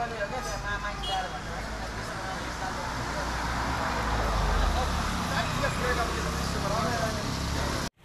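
Background voices of several people talking over a low rumble that swells around the middle; the sound cuts out abruptly just before the end.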